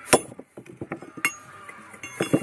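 Bricklaying work: a steel trowel knocking and clinking on brick and mortar in a string of sharp strikes, the loudest just after the start, with smaller taps between.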